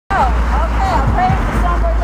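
A woman's voice talking, too unclear to make out, over a steady low rumble of street traffic.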